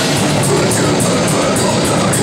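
Death metal band playing live: heavily distorted electric guitar and drum kit in a loud, dense wall of sound, with cymbals struck about four times a second.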